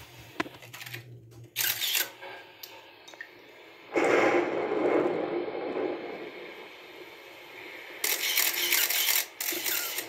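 Handling noise from a phone being moved about in the hand, with its microphone rubbed and scraped in bursts: a short one just before two seconds in, a longer one from about four seconds in that fades away, and another around eight seconds in.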